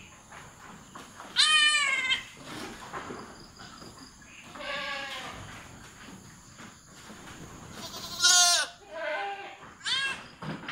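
A goat doe in difficult labour (dystocia) bleating while she is assisted by hand. There are two loud bleats, about a second and a half in and near the end, and quieter calls between them.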